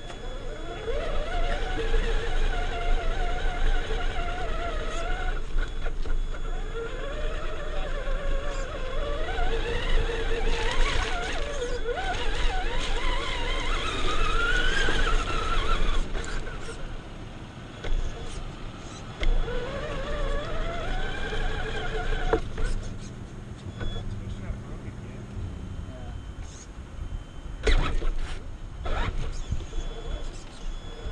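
A radio-controlled truck's electric motor whining, its pitch gliding up and down with the throttle in three runs separated by short stops, over a steady low rumble and a few sharp knocks near the end.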